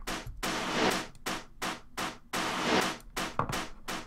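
A stripped-back section of an electronic house track with a thin sound and little bass. It holds recorded percussion layers: noisy hits that swell and fade in a steady pulse, about two a second.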